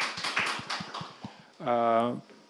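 A few people clapping by hand, separate claps that thin out and die away about a second and a half in. Near the end comes a short, drawn-out hesitation sound from a man's voice.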